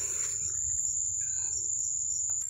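A steady, high-pitched insect drone, typical of crickets or cicadas, with a few faint chirps in the middle and a low rumble of wind or handling on the microphone underneath.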